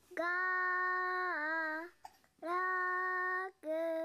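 A child's voice singing long held notes: three in a row, the first two long and steady in pitch with a wavering dip at the end, the last one short.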